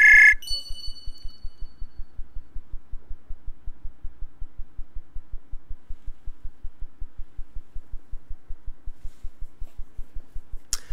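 Web-chat call ringtone: a short burst of loud electronic ringing at the start, followed by two higher tones that fade out over the next second and a half. After that, a steady, rapid low pulsing of about eight clicks a second carries on, with the call connected but no voice coming through.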